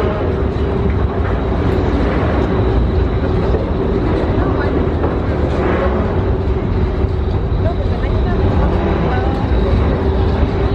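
Steady low drone of an NYC Ferry catamaran's engines running at the landing, a constant hum held over a deep rumble.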